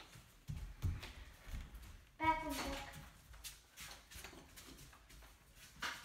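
A short, high-pitched voice call about two seconds in, over scattered soft thumps and knocks of movement.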